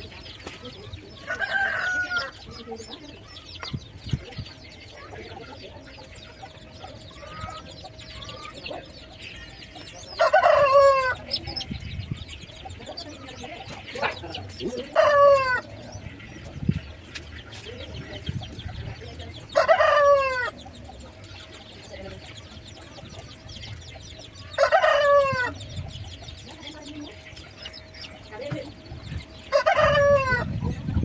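Chickens calling in the yard: several loud, short calls, each falling in pitch, a few seconds apart, over the faint rustle of leafy branches being handled.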